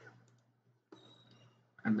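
A few faint computer keyboard clicks over a low steady hum, and a man's voice starting near the end.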